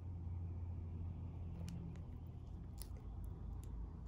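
A few faint, light clicks from a wire stripper/crimper's cutter jaws as they close on the bared stranded copper end of a 16-gauge wire to snip off the excess, over a steady low hum.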